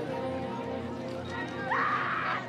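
Marching band holding a sustained chord under crowd voices. Near the end comes a loud, rising, whinny-like cry.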